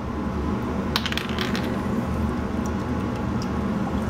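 Light clicks and clinks of a glass Worcestershire sauce bottle being opened and handled over a small saucepan, a quick cluster about a second in and a few fainter ticks later, over a steady low hum.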